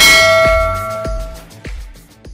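A single bell-like chime struck right at the start, ringing and fading over about a second and a half, over background music with a steady beat that dies away near the end.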